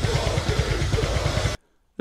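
Live extreme-metal drumming: a blast beat with rapid bass-drum strokes, about a dozen a second, under a dense wash of cymbals and band sound. It cuts off suddenly about one and a half seconds in.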